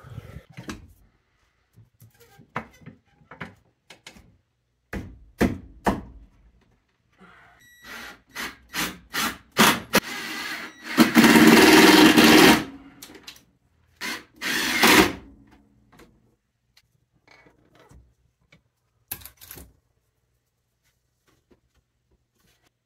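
Scattered knocks and taps of softwood blocks being shifted and wedged into place, then a power drill running for about a second and a half near the middle and again briefly a couple of seconds later.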